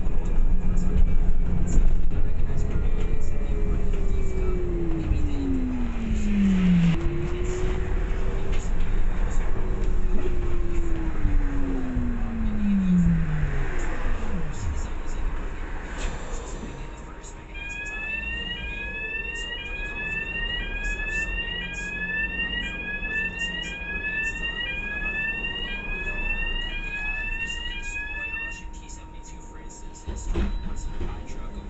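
Inside a single-deck bus: the drivetrain rumbles and twice gives a smooth whine that falls in pitch as the bus slows. From about halfway the bus is quieter, and a repeating rising electronic chirp, a little over one a second, sounds for about ten seconds over a faint steady tone.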